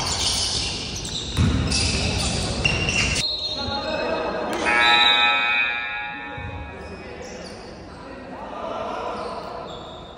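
Basketball game on a hardwood gym floor: a ball bouncing and players' voices, echoing in the large hall. A loud held pitched sound comes about five seconds in and is the loudest moment.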